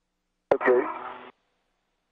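A brief snatch of radio voice on the spacewalk communications loop: a sharp click as the transmission opens, then less than a second of a muffled, narrow-band voice that cuts off abruptly.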